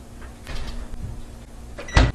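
Kitchenware being handled, with a faint rustle about half a second in and one sharp knock at the very end.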